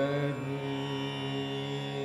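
Carnatic raga Thodi: a wavering, ornamented melodic phrase ends just after the start. A steady held note then sounds over the tanpura drone.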